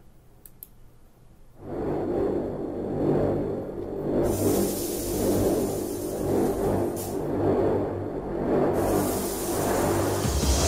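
A couple of faint clicks, then about a second and a half in a loud promo-video soundtrack starts: a dense low rumble with whooshes and music.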